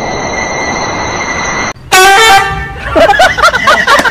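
A steady hiss with thin high tones cuts off, and about two seconds in a loud, flat honk like a horn sounds for half a second. It is followed by a quick run of short, wavering squeaky sounds.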